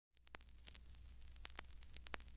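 Near silence: faint static crackle of scattered clicks over a low hum.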